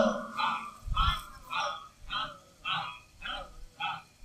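Short, quiet vocal bursts repeating about twice a second in a steady rhythm.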